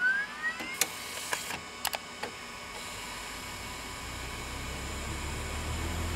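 Electronic intro sound design: a rising sweep tailing off at the start, a few sharp clicks over the first two seconds or so, then a steady static-like hiss with a low drone slowly building.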